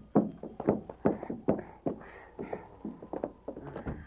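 Radio-drama sound effects of men coming indoors: a run of irregular footsteps and knocks in a small room.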